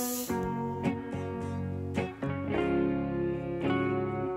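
Background music: acoustic guitar playing plucked and strummed notes.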